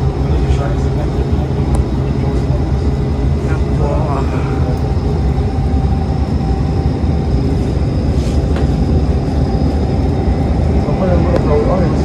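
Steady low drone of a city bus's engine and road noise, heard inside the passenger cabin while the bus drives along. A voice briefly cuts in about four seconds in and again near the end.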